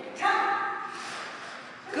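A raised voice calls out one short drawn-out cue, its echo trailing off in a large hard-walled hall.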